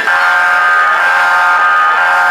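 Boxing arena timekeeper's buzzer sounding one long, loud, steady blast that starts suddenly, marking the end of a round.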